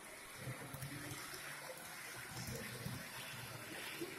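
Model high-speed train running along a layout's track: a faint, steady rolling hiss, with low indistinct murmur underneath.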